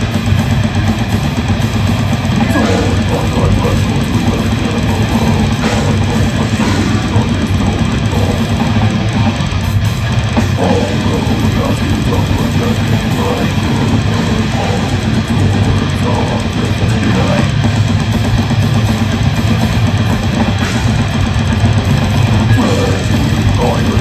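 Death metal band playing live: distorted electric guitars, bass and drum kit in a loud, dense, unbroken wall of sound, heard from the audience with a heavy low end.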